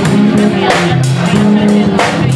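A rock band playing live and loud: held chords over a moving bass line, with drums and cymbals struck in a steady beat.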